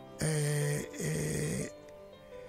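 A man's voice holding two drawn-out hesitation sounds, "ehhh", each under a second long at a steady pitch, over a faint background music bed.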